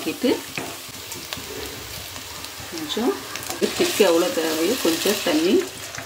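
Wooden spatula stirring and scraping mashed potato in a non-stick frying pan, with the food sizzling in hot oil and small scrapes and clicks throughout.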